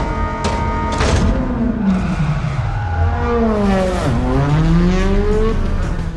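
Rally car engine revving inside the cockpit: a couple of sharp clicks near the start, then the engine's pitch sinks over a few seconds and climbs again in the second half, as with a gear change under acceleration.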